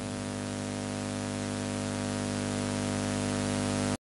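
Steady electrical hum with a hiss over it, holding at an even level and cutting off suddenly at the end.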